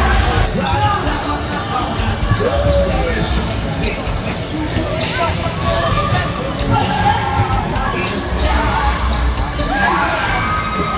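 Basketball bouncing on a hardwood court in a large, echoing gym, mixed with the chatter and shouts of many spectators and players.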